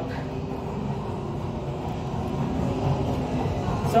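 Steady, muffled din of a video arcade: a low hum and rumble of game machines with faint snatches of machine tones mixed in.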